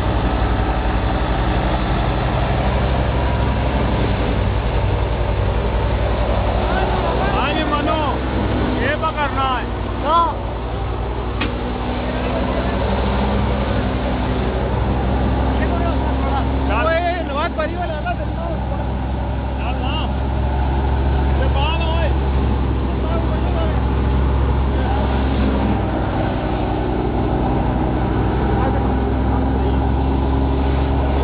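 A steady low engine drone, like a running vehicle, with voices heard at times over it.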